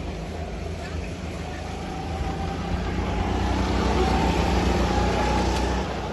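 Go-kart engines running on the track, one kart's engine note climbing and getting louder from about two seconds in as it comes close.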